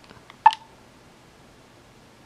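A single short electronic beep from an RCA Small Wonder pocket camcorder about half a second in, as a button on it is pressed, with a faint click just before.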